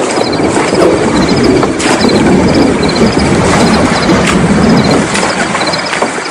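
Radio-drama sound effect of a boat moving on a river: a steady rush of water and hull noise, with small high chirps repeating about twice a second.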